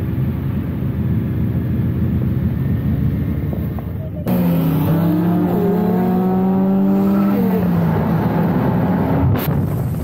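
Car engines running as a line of rally cars rolls out. About four seconds in, the sound switches to a single car's engine pulling hard, its pitch rising, holding steady, then falling. There is a brief sharp click near the end.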